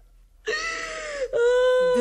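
A woman crying aloud in a long, drawn-out wail. It starts about half a second in, is held on one high note, and then drops a step lower.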